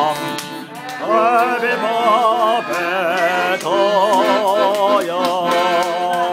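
A man singing high, sustained phrases with a wide vibrato, accompanied by an accordion; the voice breaks off just after the start and comes back in about a second later.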